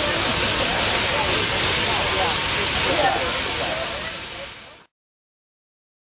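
Steady, loud hiss of steam from Santa Fe 4-8-4 steam locomotive No. 3751 standing close by, with people's voices talking underneath. It fades out about four and a half seconds in and then cuts to silence.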